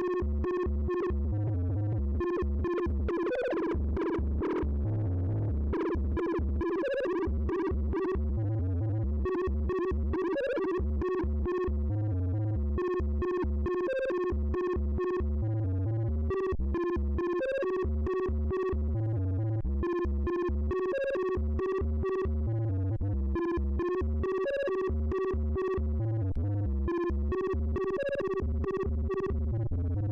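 Modular synthesizer playing a step-sequenced pattern, driven by a Tip Top Audio Z8000 sequencer: quick short synth notes over a low bass pulse that repeats about once a second. A brighter, sweeping wash rises through the pattern about three to five seconds in.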